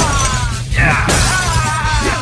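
Glass shattering, a car window being smashed in a staged fight, starting about a second in. It comes after a sharp thump at the start and plays over background music.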